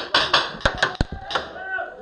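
A rapid, irregular string of paintball marker shots: about half a dozen sharp pops over the first second and a half, then a pause.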